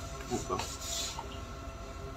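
Quiet room tone with a steady faint hum. About half a second in come a few faint rustles and a brief, faint voice.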